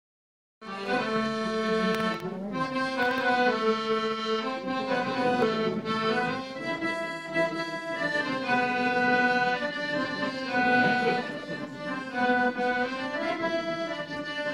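Solo accordion playing a tune of melody over held chords, starting just after the first half-second.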